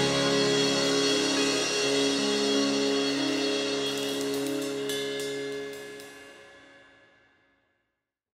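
A worship band's closing chord ringing out on keyboard, electric guitars and bass, with a few drum and cymbal hits, then fading away to silence about seven seconds in.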